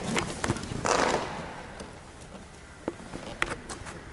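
Handling noise on a glider's fin and rear fuselage as the fin is pushed by hand and a man leans against the fuselage: a few scattered sharp clicks and a brief rustle about a second in.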